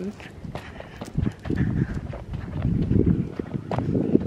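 Footsteps on a dirt path, with irregular low thumps and rumble from a handheld camera jostled as it is carried.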